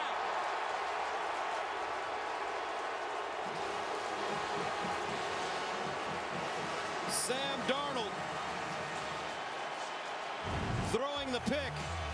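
Large stadium crowd cheering in a steady roar as the home team intercepts a pass. Near the end, music with a low beat comes in.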